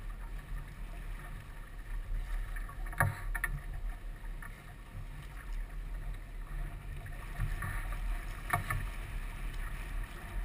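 Sailboat hull moving through choppy water under sail: steady rushing and splashing of water along the side, with wind buffeting the microphone. Two sharper knocks break through, about three seconds in and again towards the end.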